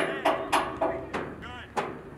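Voices shouting across an outdoor soccer field, one call held for most of a second, with four or five sharp knocks scattered through it, the loudest at the very start.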